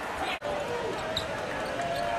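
A basketball being dribbled on a hardwood court, with voices calling out in the arena behind it. The sound drops out sharply for an instant just under half a second in.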